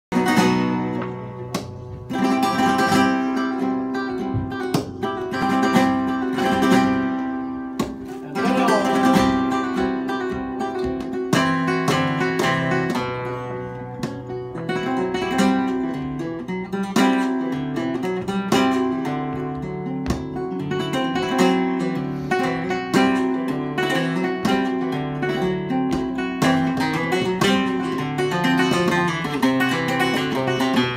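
Flamenco guitar playing a bulerías por soleá, mixing picked melodic runs with sharp strummed chords.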